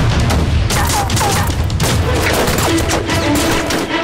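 Rifle gunfire in a battle: many shots from several rifles in quick, irregular succession, over background music.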